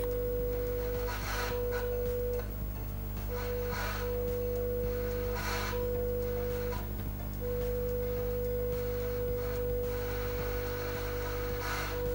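A steady mid-pitched test tone from the TV's speaker, carried on the test generator's signal received through the UHF converter. It drops out briefly several times, with short bursts of hiss, over a steady low mains hum.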